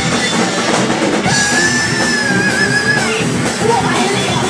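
Thrash metal band playing live in a small room: distorted electric guitars, bass guitar and drum kit at full volume. A high note is held for about two seconds in the middle, wavering near its end.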